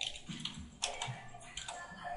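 Computer keyboard typing: a run of irregularly spaced keystrokes as a short hashtag is typed.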